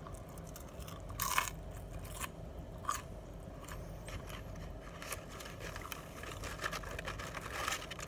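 Close-up mouth sounds of chewing Jack in the Box curly fries: irregular crunches and bites, the loudest about a second in, over a steady low hum.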